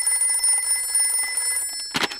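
Cartoon telephone ringing with a steady electronic ring. It is cut off near the end by a click as the receiver is picked up.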